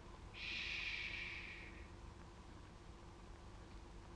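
A man's long breathy 'shhh' hiss, lasting about a second and a half from shortly after the start and fading away, followed by faint room hum.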